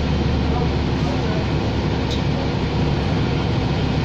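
Steady cabin drone of a New Flyer Xcelsior XD60 diesel articulated bus under way: low engine hum with road noise, heard from inside the bus.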